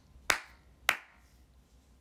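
A person clapping her hands twice, two sharp claps about half a second apart.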